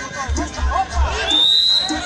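A referee's whistle blown once, a short high tone about a second and a half in, calling a foul, over crowd chatter and background music.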